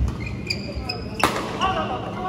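Badminton rally on an indoor court: short rubber-shoe squeaks on the court mat and racket hits on the shuttlecock, with a sharp crack of a hit a little past a second in. A player's voice calls out near the end.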